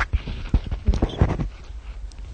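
Microphone handling noise: a rapid, irregular run of knocks, thumps and rubbing on the microphone, typical of it being adjusted.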